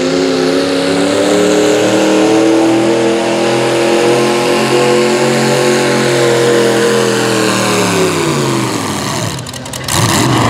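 V-8 engine of an antique Farmall pulling tractor, running at full throttle under the load of a weight-transfer sled. The engine note holds steady, then falls in pitch and dies down over the last two seconds as the tractor slows to a stop at the end of its pull.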